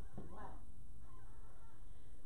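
Speech: a single spoken "wow" near the start, then quiet room noise.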